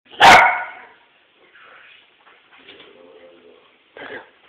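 A West Highland White Terrier barks once, sharp and loud, about a quarter second in.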